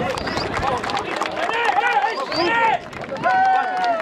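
A crowd of voices shouting and calling out over one another, with a long falling shout starting near the end.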